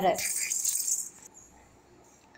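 A brief hissy rattling noise lasting about a second, then near silence.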